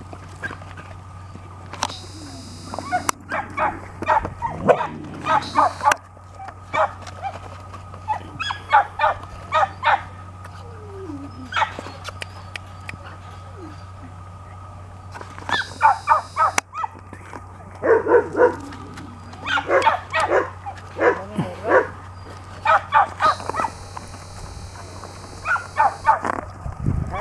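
Several dogs barking and yipping in repeated short bursts, with whimpers between.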